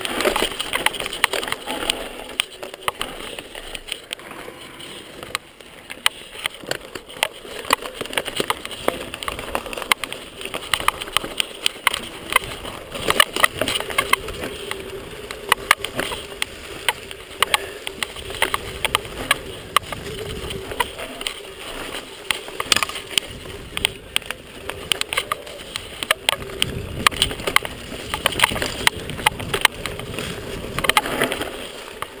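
Mountain bike rattling and clattering down a rough dirt singletrack: a dense run of sharp, irregular knocks from the bike jolting over the trail, over a steady rushing noise.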